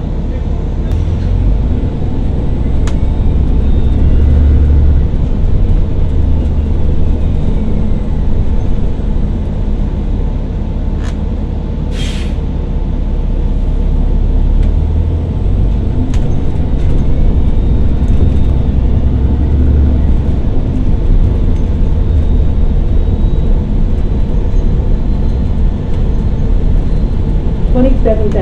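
Cabin noise of a 2013 New Flyer XDE40 diesel-electric hybrid bus under way, its Cummins ISB6.7 diesel and BAE HybriDrive drive running with a steady deep rumble. A faint whine rises and falls twice as the bus speeds up and slows. A short hiss of air comes about halfway through.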